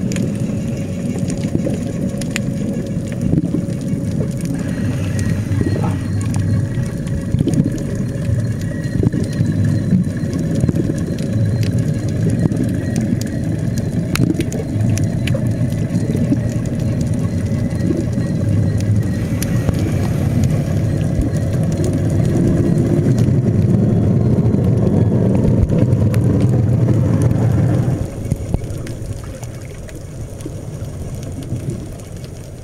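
Underwater noise picked up through a camera housing: a steady low rumble with scattered clicks and crackles and a faint steady whine, growing louder late on, then dropping away suddenly shortly before the end.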